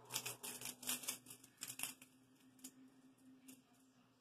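Pyraminx puzzle being turned by hand: a quick run of light plastic clicks and rattles in the first two seconds, then a few scattered clicks, over a faint steady hum.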